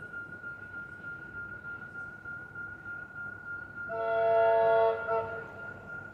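A train horn sounding one chord of several notes about four seconds in, held for about a second and a half before fading, from a train not yet in sight. A faint steady high-pitched whine runs underneath.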